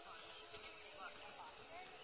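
Near silence: faint outdoor ambience with a couple of brief, distant voices.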